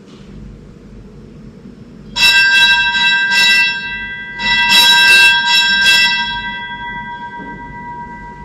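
A bell rung in two quick runs of strikes, the first about two seconds in and the second about halfway through, its clear ringing tone hanging on and slowly fading.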